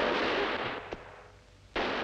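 Two pistol shots about two seconds apart, one right at the start and one near the end, each a sudden crack with a long noisy tail.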